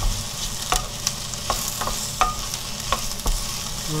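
Julienned potatoes with onion and carrot sizzling in oil in a nonstick frying pan, stirred with a spatula that knocks and scrapes against the pan about twice a second.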